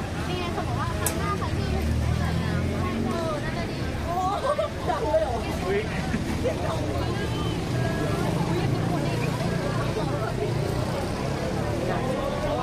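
Several people chatting as they walk along a street, with a motor vehicle engine running nearby. Its low rumble is strongest in the first half.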